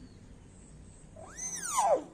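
Common hill myna giving one loud call about a second in, a whistle-like cry that rises and then sweeps down in pitch, strongest as it falls.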